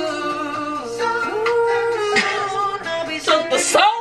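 Female soul singer singing a slow ballad with long held, bending notes over instrumental accompaniment, breaking into a fast run of notes swooping up and down near the end.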